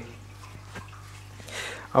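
Quiet room tone with a low steady hum, a faint click about a second in, and a short soft breath just before speech resumes at the end.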